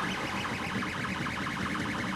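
Desktop 3D printer running a print: its stepper motors whine steadily in quickly changing tones as the print head moves.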